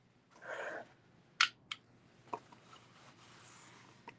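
Handling noise from a metal rhinestone necklace being set out: a short soft rustle, then two sharp clicks about a quarter of a second apart, followed by faint ticks and shuffling.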